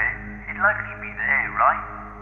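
A voice filtered thin, as if heard over a telephone, speaking in short phrases over a low steady background drone.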